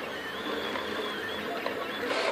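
Picaso 3D Builder FDM 3D printer running a print: its stepper motors whine in a thin, high tone that shifts in pitch as the print head moves, over a steady hiss.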